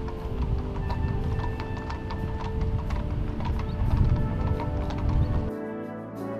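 Horses' hooves clip-clopping at a walk on a paved lane as a team pulls a carriage alongside mounted riders, over music with long held notes. The hooves and the low rumble stop shortly before the end.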